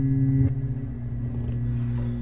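A low, steady, ominous drone in the film score, several held tones over a rumbling hum, stepping slightly lower about half a second in.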